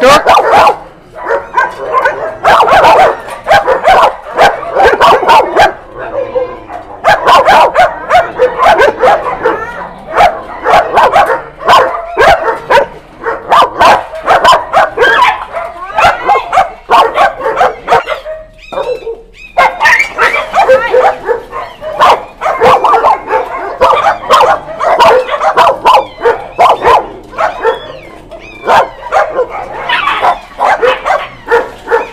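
Many dogs barking and yipping over one another, loud and almost nonstop, with a brief lull about two-thirds of the way through.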